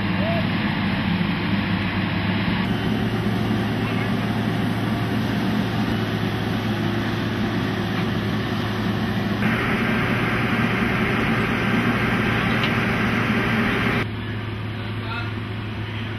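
A steady low machinery hum, like idling engines, with indistinct voices behind it. The sound changes abruptly several times, as at cuts between shots.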